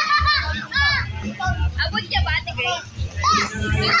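Children at play: several high voices shouting and squealing, overlapping throughout.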